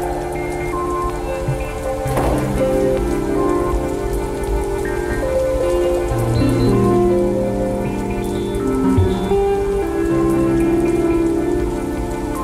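Steady patter of rain under slow instrumental music of long held notes, the chords shifting every few seconds.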